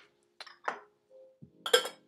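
Small ceramic tea cups and teaware clinking as they are handled and set down: a few light separate clinks, the loudest near the end with a brief bright ring.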